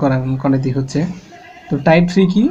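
A man's voice speaking, with a short pause about halfway through.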